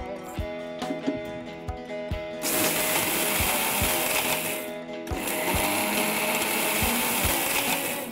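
Electric mixer-grinder with a stainless steel jar grinding dry-roasted whole spices into a dry powder: it starts a couple of seconds in, stops briefly near the middle, then runs again until just before the end. Background music with a steady beat plays throughout.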